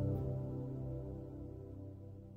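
Soft ambient background music of sustained, held tones, fading out.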